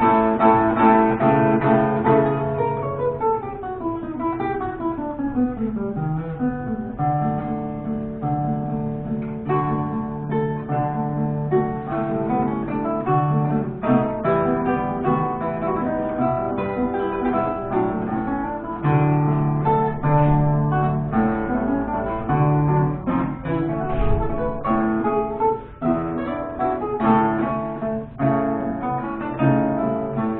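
Two romantic guitars, reproductions of c.1815 Antonio Vinaccia and Gennaro Fabbricatore models, playing a classical duet of plucked melody over held bass notes. A long descending run of notes comes a few seconds in.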